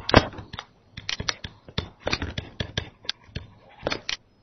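Tablet-PC stylus clicking and scratching on the screen during handwriting: a quick, irregular run of sharp taps.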